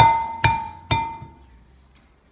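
Egg knocked three times, about half a second apart, against the rim of a glass measuring jug to crack it, each knock leaving the glass ringing briefly.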